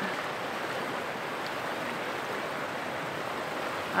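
Shallow creek flowing over rocks, a steady rushing of water.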